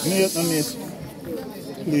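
A person hushing with a long 'shh' for about the first second, over murmured voices, followed by quieter talking.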